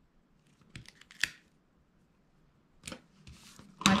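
Paper being handled and pressed into place on a cutting mat: a few light clicks and taps, then a short soft rubbing as a plastic spatula smooths the paper strip down near the end.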